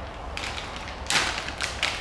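Plastic lure packet rustling and crinkling as it is handled and opened, in a few short bursts, the loudest about a second in.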